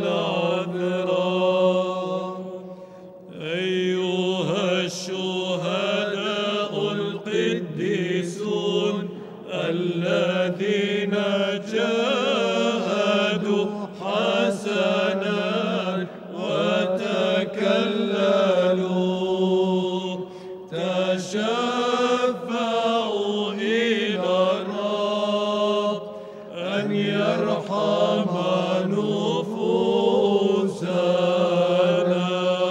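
Byzantine liturgical chant sung over a steady low held note, with short breaks between phrases about three seconds in and again near the end.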